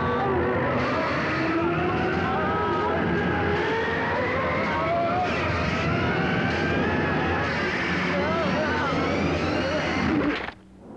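Horror-film sound effect of the unseen demon force rushing through the woods as it carries a man off: a rushing roar that rises slowly in pitch throughout, with a man's wavering yells over it.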